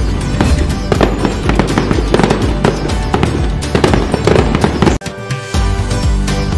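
Rapid firecracker pops and crackles over festive background music. Both cut off suddenly about five seconds in, and the music comes back near the end.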